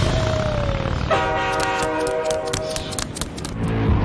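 A motorcycle engine rumbles as it pulls away, with a slowly falling tone over it. About a second in, a multi-tone horn chord blares for about a second and a half, followed by a rapid run of sharp clicks.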